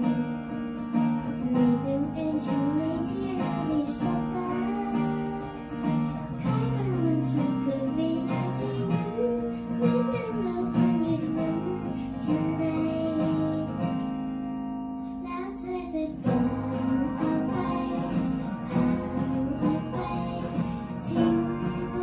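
A young girl singing a Thai pop song into a handheld microphone over a recorded instrumental accompaniment. The voice drops out briefly about fifteen seconds in.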